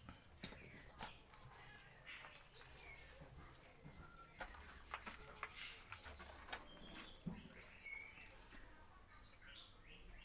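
Near silence, broken by scattered faint clicks and a few brief, faint bird chirps.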